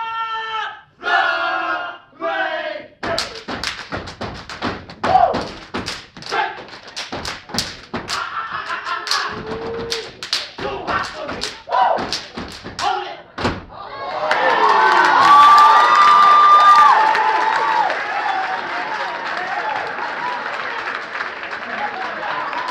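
Steppers stomping and clapping a sharp, irregular rhythm with their feet and hands, after a short shouted call at the start. About 14 seconds in, the crowd breaks into loud cheering and screams that carry on.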